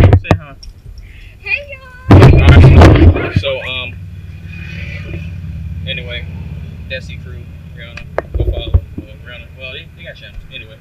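Loud rumbling handling noise on the camera microphone as the camera is moved, once at the start and again about two seconds in, followed by a steady low hum with faint voices talking at a distance.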